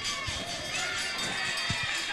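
Faint background music mixed with distant voices, with a few short low thumps.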